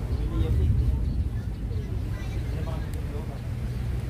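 Wind rumbling steadily on the microphone, with faint voices in the background.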